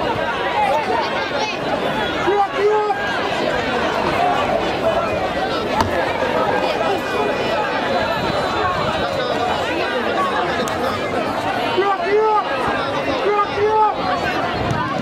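A football crowd's voices: many people talking and calling out at once in a steady babble, with a few louder single shouts standing out now and then.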